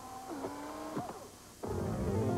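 Short electronic synthesizer sting: sustained tones that bend and slide in pitch, then a louder, fuller burst of synthesizer music starts about one and a half seconds in.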